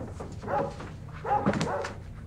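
A dog barking a few short times.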